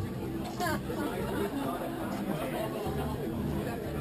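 Indistinct chatter of several people talking at once at a moderate, steady level, with no single voice standing out.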